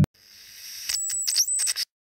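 TV static sound effect: a hiss that swells in, then crackles in glitchy bursts with a thin high whine, and cuts off suddenly near the end.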